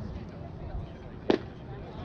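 A single sharp pop about halfway through, a baseball smacking into a leather glove, over faint background voices.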